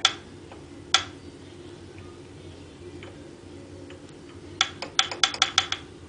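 Sharp metal clicks from a Hendey lathe's change gears as a gloved hand works them on their shafts: one click at the start and another about a second in, then a quick run of about ten clicks near the end. A steady low hum runs underneath.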